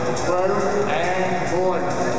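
Indistinct voices, with pitch wavering up and down, carrying through a large indoor arena.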